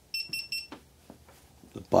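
GoPro Hero4 Black action camera giving three short, quick electronic beeps as its button is pressed, the signal it gives on powering on.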